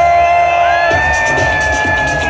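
House music from a DJ's sound system with long held high tones, one sliding up and holding, over a crowd cheering and whooping. The bass drops away for about the first second, then comes back in.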